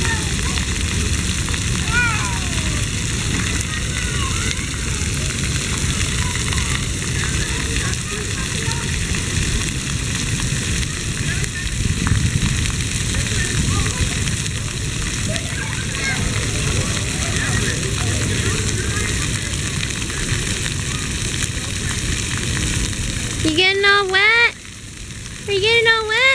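Splash-pad fountain jets spraying and splattering onto wet pavement, a steady hiss, with faint children's voices scattered through it. Near the end a high voice close by squeals several times, loudly.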